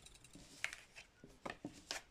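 Fortune-telling cards being handled and laid on a cloth-covered table: a few faint clicks and rubs.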